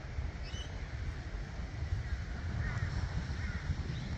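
A few bird calls, short looping cries about halfway through and again near the end, over a steady low rumble.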